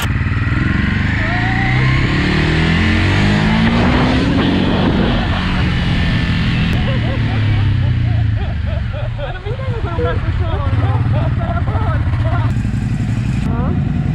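Motorcycle engine pulling away and climbing in pitch through the first few seconds, then running at a steady cruising speed while the bike is ridden two-up, with wind noise over it.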